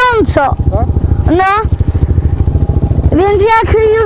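Off-road motorcycle engines running on the move. A high engine note falls, then rises in pitch twice in the first second and a half, gives way to a low, uneven chugging for about a second and a half, and comes back near the end.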